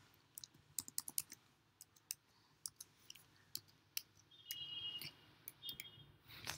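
Keys of a computer keyboard clicking as a password is typed at a login screen: a dozen or so quick, irregular faint clicks. A faint high tone sounds for about a second near the end.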